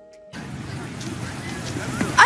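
A few faint held music tones end about a third of a second in, giving way to steady outdoor traffic and street background noise of a film scene at an airport kerb.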